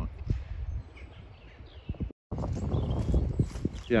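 Outdoor ambience with a few faint bird chirps. Just past halfway it drops out for an instant, then comes back louder with a low wind noise on the microphone.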